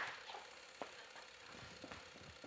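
Mostly quiet, with a few faint, short thuds of footsteps as someone jogs in place.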